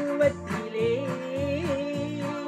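Electronic keyboard music: a wavering melody line over a steady drum-machine beat and accompaniment.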